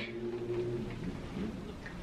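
Quiet room noise: a soft, steady hiss with a faint low hum.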